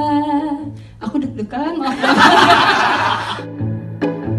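A woman singing a Javanese tembang through a microphone, holding one steady note that ends about a second in. A loud burst of audience cheering and laughter follows for about a second and a half, and background music with plucked strings begins near the end.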